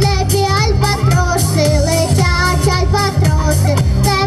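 A young girl singing a pop song into a microphone over amplified backing music with heavy bass and a steady beat; her voice wavers with vibrato on held notes.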